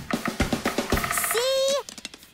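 Drum kit played in a quick beat of kick-drum thumps and snare and cymbal hits. The drumming breaks off about a second and a half in, and a short rising and falling vocal sound follows.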